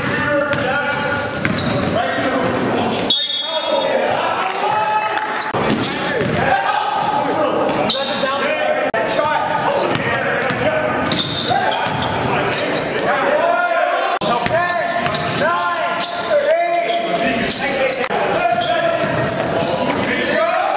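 Live basketball game in an echoing gymnasium: a basketball bouncing on the hardwood floor under constant voices of players and spectators, with a brief laugh at the start.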